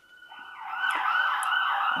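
An emergency-vehicle siren, swelling in over the first half second and then warbling rapidly, about four rises and falls a second.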